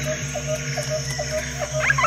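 Frog croaking in short, evenly spaced pulses, about four a second, over a low sustained music drone; a few higher chirps come in near the end.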